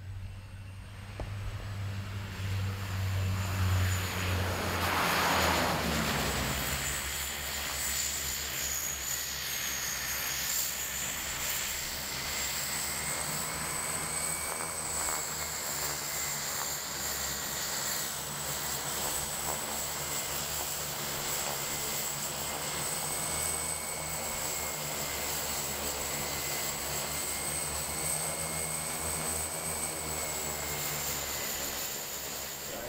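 De Havilland Canada DHC-6 Twin Otter's two turboprop engines as the ski-equipped plane lands. It is loudest as it passes closest about five seconds in, its pitch falling as it goes by. It then taxis with a steady high turbine whine over the propeller drone.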